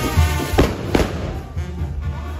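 Firecrackers going off from a burning torito firework frame: two sharp bangs about half a second apart, over a brass band playing dance music with tuba and bass drum.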